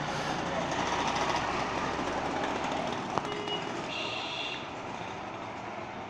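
Steady background noise, a rushing haze that is loudest over the first couple of seconds and then eases off, with a few short high beeps near the middle.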